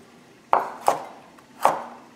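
Chef's knife slicing through a raw carrot and striking a wooden cutting board: three sharp chops.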